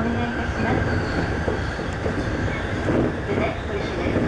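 JR East E531 series electric train running along the line, a steady rumble of wheels on rail heard from inside the train.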